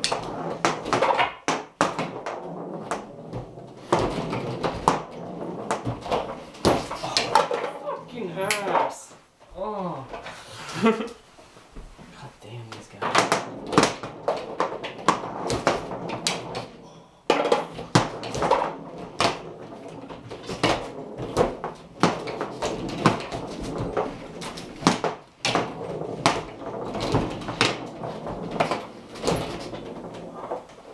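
Foosball game in play: quick, irregular clicks and knocks of the ball being struck by the table's players and of the metal rods being slammed and spun, with a short lull about halfway.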